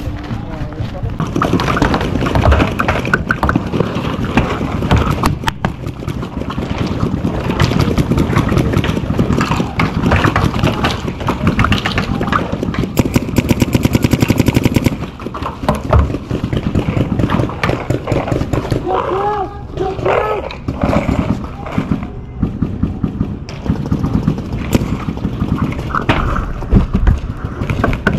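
Paintball markers firing strings of shots, at their fastest and most even for a few seconds midway, as a rapid volley, with players' voices over them.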